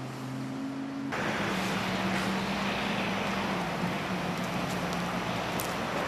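Outdoor background: a steady low hum under an even hiss. The hiss jumps up abruptly about a second in, and the hum dips slightly in pitch partway through.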